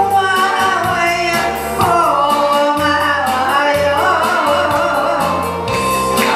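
A man and a woman singing a Korean popular song as a duet over a backing track with a steady drum beat.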